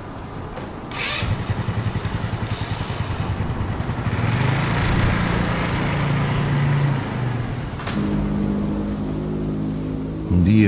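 A small motor scooter's engine catches with a click about a second in and runs with a quick even pulse. Its pitch climbs from about four seconds in as it revs and pulls away, and it settles to a steadier tone near the end.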